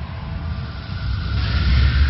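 Cinematic intro sound effect: a deep rumble with a rushing hiss over it, swelling to its loudest near the end, with a faint high tone held underneath.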